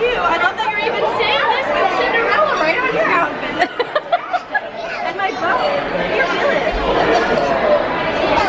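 Chatter: several people talking close by over the babble of a busy dining room, with a few short knocks near the middle.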